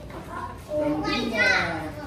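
Several children talking and calling out at once in a room, their voices overlapping and growing louder about a second in.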